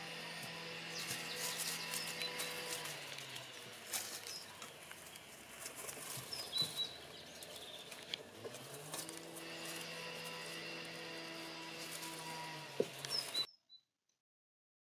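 Faint outdoor ambience: a steady hum with overtones dips in pitch about three seconds in and climbs back near nine seconds, with a few bird chirps and light ticks over it. The sound cuts off abruptly just before the end.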